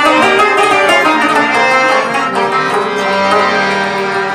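Harmonium and tabla playing an instrumental passage of a Pashto ghazal between sung lines: sustained, steady reed chords on the harmonium with tabla strokes beneath.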